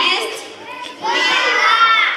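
A group of young children shouting a reply together, many high voices at once, loudest in the second half.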